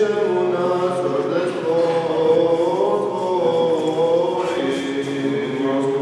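Several men's voices singing Serbian Orthodox liturgical chant: long held notes that glide from one pitch to the next, with a new phrase starting about four and a half seconds in.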